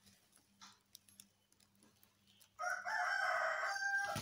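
A rooster crowing once, starting a little past halfway through and lasting about a second and a half, after a quiet stretch with only a faint hum and a few small clicks.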